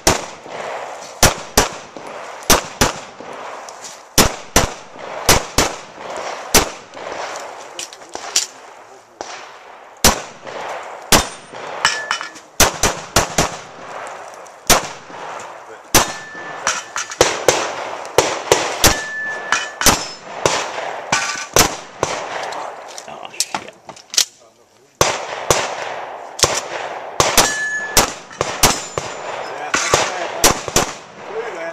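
Semi-automatic pistol fired in quick pairs of shots, about a third of a second apart, in groups with short pauses between them.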